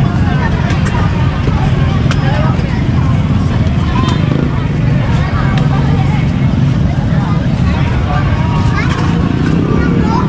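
Busy street crowd chatter over a steady low rumble of nearby motor traffic, with a few short sharp knocks.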